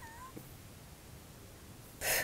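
Quiet room tone with one brief, faint high squeak at the very start that rises and then levels off.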